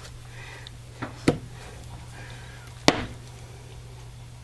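Wooden wire soap cutter working through a loaf of very hard castile soap: three sharp knocks, a small one about a second in, a larger one just after, and the loudest near three seconds.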